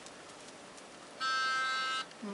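A steady pitched reference tone from a phone starts abruptly about a second in and holds unchanged for under a second: the starting note given to a group of singers just before they begin.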